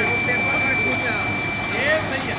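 Hot air seam sealing machine running: a steady whirring noise with a constant high whine, with voices over it.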